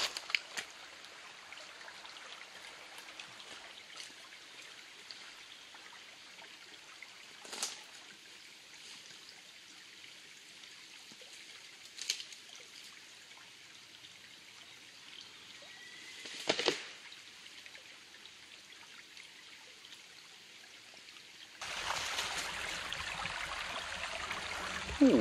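Shallow woodland stream trickling over stones, a steady soft rush, with three sharp clicks a few seconds apart. Near the end the rush becomes suddenly louder.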